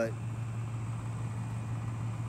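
A steady, low-pitched mechanical hum.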